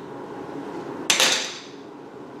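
A single short, sharp sound about a second in, dying away within half a second.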